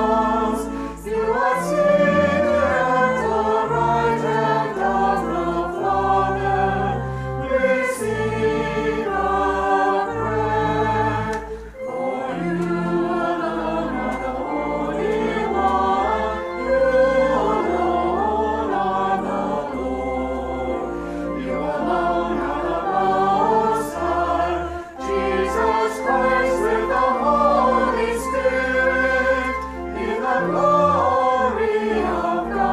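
Church choir singing a hymn in sung phrases with short breaths between them, over instrumental accompaniment holding sustained low bass notes.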